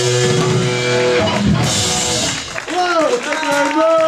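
Live rock band with electric guitar and drum kit holding a loud final chord that breaks off about two and a half seconds in, followed by shouting voices.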